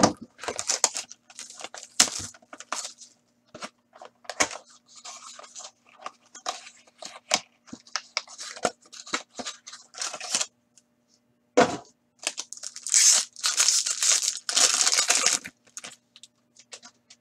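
A cardboard trading-card box being opened by hand: a string of short rips, scrapes and rustles of card stock. Near the end come two longer, louder ripping and crinkling stretches as the foil pack wrapper is torn open.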